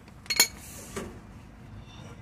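A sharp metallic clink of steel hand tools, a socket and bar being handled while the tool is changed for a breaker bar, with a fainter knock about a second later.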